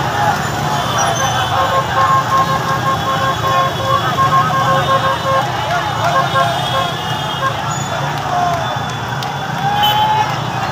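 Dense crowd of voices shouting and talking in a packed street among motorcycles. A horn sounds steadily for about four seconds, starting about a second and a half in.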